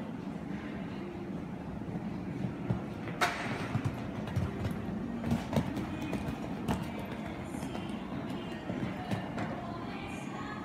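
Show-jumping horse cantering on arena sand: repeated dull hoofbeats, loudest as it passes close by, with a sharp knock about three seconds in, over a background murmur of voices.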